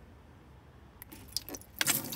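Cast iron waffle pan's hinged halves clinking and rattling as it is handled, starting about halfway in and rising to a loud clatter near the end.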